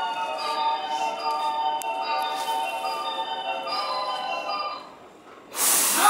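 Japanese station platform departure melody: a short chime-like tune over the platform speakers, signalling that the train is about to leave. It ends about five seconds in, and a brief loud burst of hiss follows near the end.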